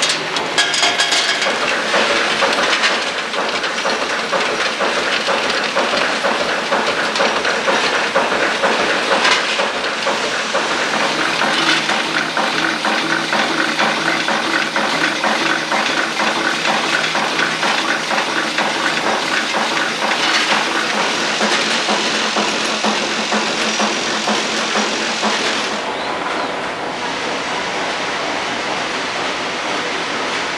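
Ammunition production machinery running: a continuous dense metallic rattling and clatter with a hiss, like metal cases moving through feeders. It eases off slightly near the end.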